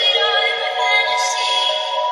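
Electronic background music with long, held synthesized notes.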